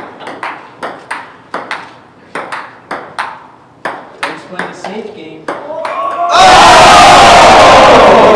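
Table tennis rally: a celluloid ball clicking sharply back and forth off paddles and table, about two to three hits a second. About six seconds in the rally stops and loud shouting from the onlookers breaks out as the point ends.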